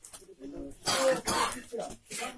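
A person coughing: a couple of harsh, loud coughs about a second in, with quiet voices around them.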